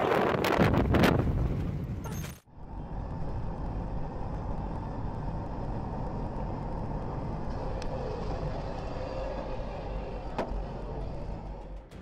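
Car driving at motorway speed, heard from inside through a dashcam: steady road and engine noise. It starts with a couple of seconds of louder, rougher road and wind noise from a moving vehicle, which cuts off abruptly. Two faint ticks come through late on.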